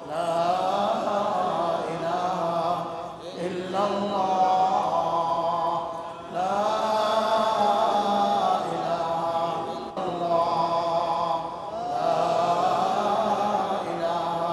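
A man chanting in long, drawn-out melodic phrases, about five of them with short breaths between.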